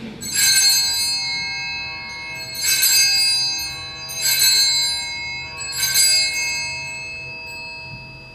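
Altar bells rung four times, each ring a bright cluster of high, clear tones that slowly dies away, marking the elevation of the host at the consecration.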